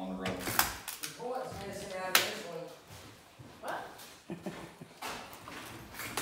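Indistinct talk with several sharp knocks, the loudest about two seconds in, then quieter room sound.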